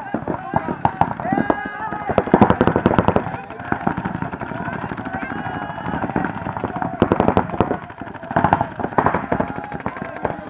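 Paintball markers firing rapid strings of shots, with shouting voices over them. The firing comes in denser bursts about two seconds in, about seven seconds in, and again near the end.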